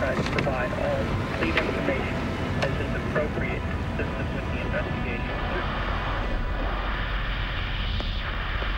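Steady road and engine noise inside a car's cabin at highway speed, with indistinct voices over it in the first half.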